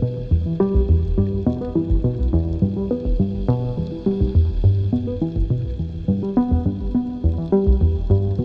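Background music: a steady rhythm of short pitched notes over a pulsing bass.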